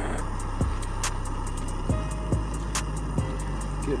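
Butane canister stove burner running steadily under a pot, with a copper strip carrying heat back to the canister to keep its pressure up in the cold. Background music plays along with it.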